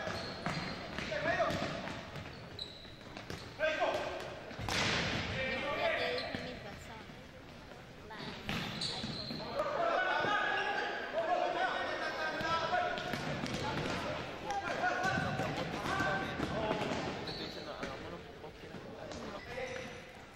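Indoor futsal play on a hardwood gym court: players shouting and calling to one another, the ball being kicked and bouncing off the floor, all echoing in the hall. Short high sneaker squeaks come through now and then.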